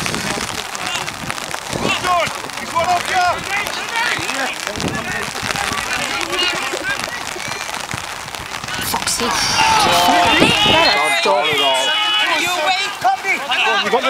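Men shouting across an open football pitch during play, the voices distant and mixed with a steady hiss of outdoor noise. The shouting gets louder and clearer from about nine seconds in.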